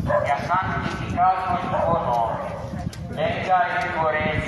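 A voice reciting a prayer in Italian, in broken phrases, over a walking crowd's steady murmur and shuffle. The voice sounds thin, with little low end, as if heard through a loudspeaker.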